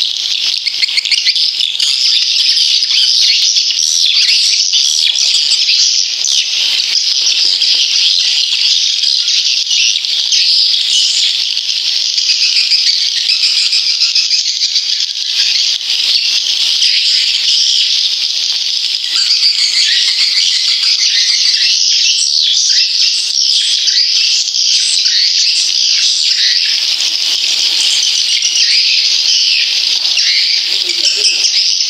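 Recorded swiftlet calls played as a swiftlet-house lure track: a dense, unbroken, high-pitched twittering chatter of many birds.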